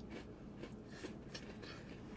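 Quiet room tone inside a car with a few faint small mouth sounds of someone licking and eating an ice cream cone.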